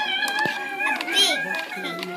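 Young children's high-pitched voices in a classroom, with a steadier hummed voice near the end.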